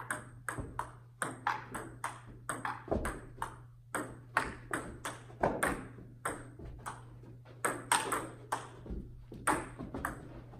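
Table tennis rally: the celluloid ball clicking off paddles and bouncing on the table in a quick, steady back-and-forth, two to three hits a second, each with a short echo off the room. A steady low hum runs underneath.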